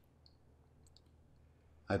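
Quiet room tone with a few faint, short clicks, then a man's voice begins near the end.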